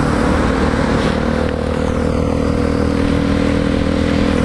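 Motorcycle engine running at a steady highway cruise, its tone unchanged throughout, under a steady rush of wind and wet-road noise while riding in heavy rain.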